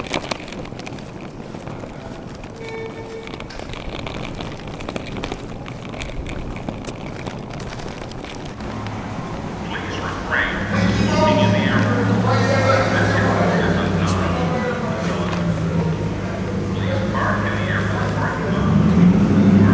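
Suitcase wheels rattling and clicking as the bag is rolled over concrete pavement joints. About halfway in, louder music with a steady bass line and a vocal comes in.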